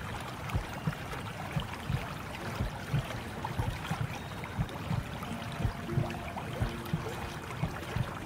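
Lapping, gurgling water: a steady wash of noise with frequent irregular low knocks. Soft held tones of gentle music come in from about halfway through.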